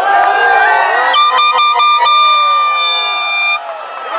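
Spectators shouting, and about a second in a handheld air horn sounds in a rapid string of short blasts, then one long blast of about a second and a half that cuts off suddenly near the end.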